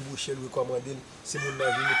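A rooster crowing in the background: one long crow starting a little past midway, heard over a man's speech.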